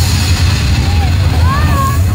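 Loud, steady low bass drone from the stage sound system under an even hiss, with high rising-and-falling whoops from the crowd starting near the end.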